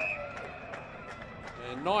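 Low background ambience from a football ground's field audio, with a faint steady high tone that fades out just after the start.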